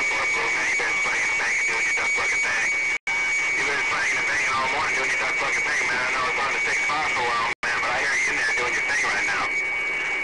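CB radio receiver playing a jumble of distant skip stations: garbled, overlapping voices over static, with a steady high whistle running across them. The sound drops out for an instant twice.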